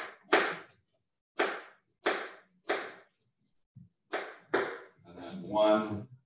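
A kitchen knife's blade drawn against steel in quick scraping strokes, about eight of them in uneven pairs roughly half a second apart, each dying away quickly, as when a knife is honed. A voice is heard briefly near the end.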